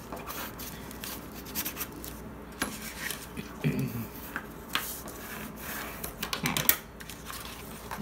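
A bone folder rubbing and scraping along paper folded over a cardboard cover, creasing it down, with irregular scrapes and taps from handling the paper and board. A sharper tap about two-thirds of the way through.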